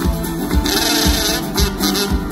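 Live band playing an instrumental passage between sung verses, with a steady kick-drum beat about twice a second, guitars, and a cymbal wash about half a second in.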